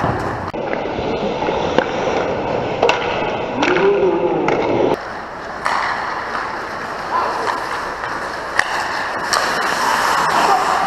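Ice skate blades scraping and carving on a rink's ice through the play, with several sharp clacks of hockey sticks and puck.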